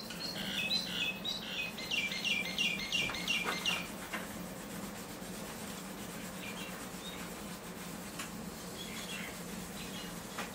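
A bird chirping a quick run of repeated notes, about four or five a second, for the first few seconds, over a steady low hum and the faint rubbing of pencils on paper.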